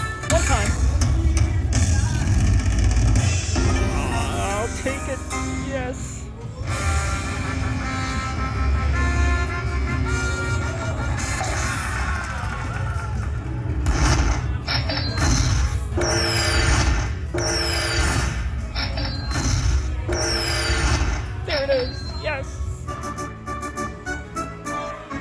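Dragon Link slot machine playing its bonus-win celebration music and jingles while the win total counts up. In the second half there is a run of about four falling chimes, roughly a second apart, and near the end a fast ticking.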